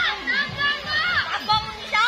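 Several children's voices shouting and chattering at once, high-pitched and overlapping.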